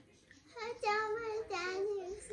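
A young girl's high voice singing a few drawn-out, gliding notes, starting about half a second in.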